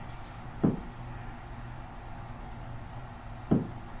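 Two single heavy knocks or thumps about three seconds apart, deep and sharp, in a quiet room with a low steady hum. They answer a request to stomp or hit something, and the listeners take them as a spirit's reply.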